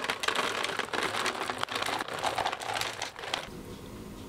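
Dry dog kibble pouring from a plastic bag into a clear plastic jar: a dense rattle of pellets striking the jar mixed with the bag's crinkling, cutting off suddenly near the end.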